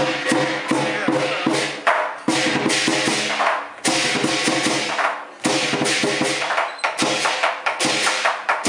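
Southern lion dance percussion: a lion drum beating a fast, driving rhythm with crashing hand cymbals and a ringing gong, the pattern briefly breaking off a few times.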